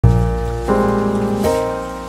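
Background piano music: sustained chords, a new one struck about every three-quarters of a second, three in all, each fading after it sounds.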